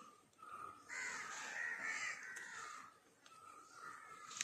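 Crows cawing, faint, a wavering run of calls from about a second in to about three seconds in.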